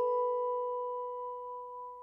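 A single bell-like chime note ringing on and slowly dying away, a low tone with a fainter one an octave above.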